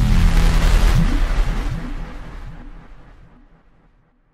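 Logo-animation sound effect: a deep rumbling bass hit with a rising whoosh on top, dying away steadily to silence over about three seconds.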